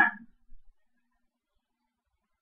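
The tail of a man's drawn-out "uh", then near silence, broken only by one very faint low knock about half a second in.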